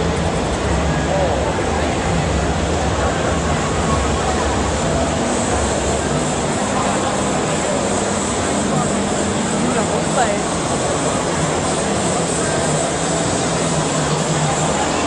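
Indistinct chatter of a crowd in a large hall, steady throughout, over a constant low rumble.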